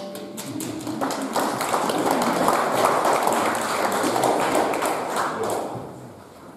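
Audience applause right after the final choir-and-organ chord ends, building about a second in and tailing off near the end.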